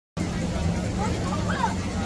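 Crowd hubbub of a busy outdoor market, with faint distant voices over a low steady rumble. It starts abruptly just after the beginning.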